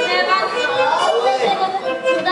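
Speech: a performer talking on stage, picked up through the stage microphones in a large hall.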